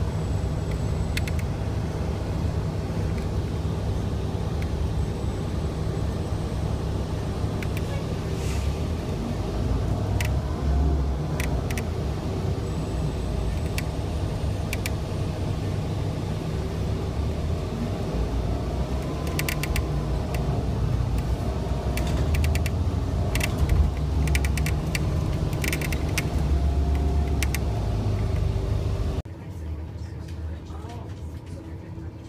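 Low, steady rumble of a METRO Blue Line light-rail train in motion, with scattered clusters of sharp clicks and rattles. The rumble drops away suddenly about a second before the end.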